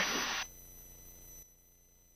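The last syllable of a word over the cockpit headset intercom, then a faint steady hiss with thin high electronic tones from the intercom audio feed, which cuts out to near silence about one and a half seconds in.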